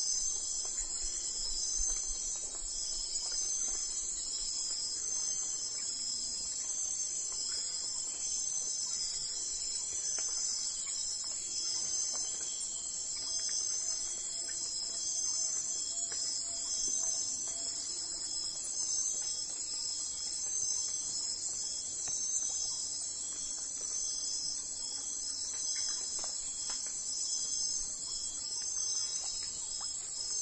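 Steady, high-pitched chorus of insects, pulsing continuously.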